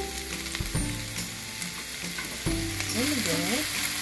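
Ground beef and diced vegetables sizzling in a frying pan while a spatula stirs them. A tune comes in over the sizzling about two and a half seconds in.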